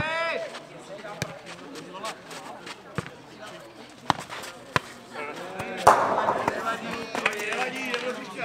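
A nohejbal ball being kicked and bouncing on a clay court during a rally: four sharp knocks over the first five seconds. Players' shouts are heard at the start and near the end, with a loud burst of shouting about six seconds in as the point is won.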